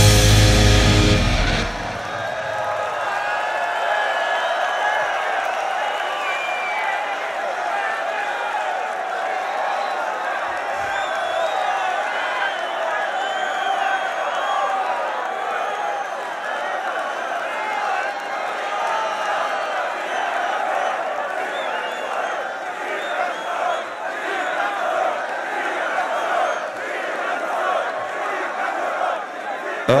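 A heavy metal band playing live with distorted electric guitars and drums, ending its song with a loud final hit about two seconds in. Then a large stadium crowd cheers and shouts steadily.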